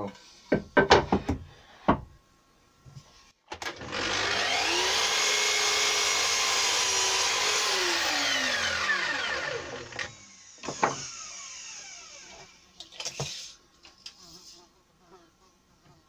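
Festool KS 120 sliding mitre saw starting up, running steadily through a crosscut in a beech stile for about four seconds, then winding down to a stop within a couple of seconds. Wooden knocks come first as the piece is set against the fence, and a clunk follows as the saw head comes back up.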